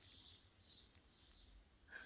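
Near silence: faint room tone, with faint bird chirps in the background.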